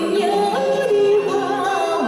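A woman singing a Vietnamese song into a microphone, holding long notes and sliding between them, with a slight waver on the held notes.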